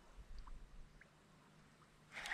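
Near silence, with a few faint, brief ticks in the first second.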